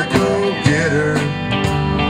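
Live country-rock band playing an instrumental passage: electric guitars with sliding, bent notes over bass and drums.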